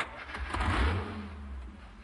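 A car engine revving as the car pulls away, opening with a sudden sharp knock; the low engine rumble swells about half a second in and then fades.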